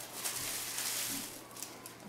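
Faint rustling and crinkling of plastic packaging wrapped around a hand blender's motor unit as it is handled, growing fainter toward the end.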